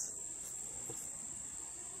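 Crickets trilling steadily: one high, unbroken tone over quiet outdoor background.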